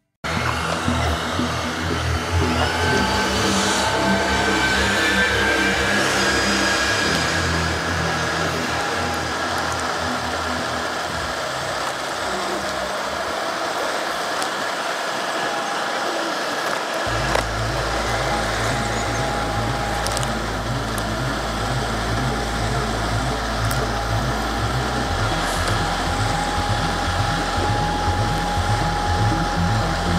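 Ancheer folding e-bike's 500 W brushless motor whining steadily under way at about 15 mph, with wind buffeting the microphone and a low rolling rumble underneath.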